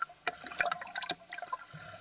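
Water trickling and splashing, with small irregular splashes and drips.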